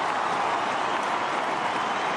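Large stadium crowd cheering a goal: a steady roar of many voices.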